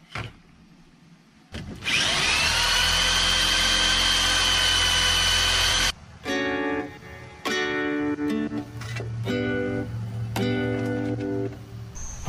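Power drill motor spinning up with a rising whine and running steadily for about four seconds, then stopping. After that comes plucked-guitar background music.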